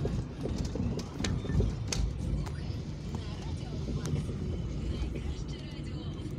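A car's tyres and suspension knocking over the rails and broken, potholed concrete slabs of a railway level crossing: several sharp jolts in the first four seconds over a steady low road rumble.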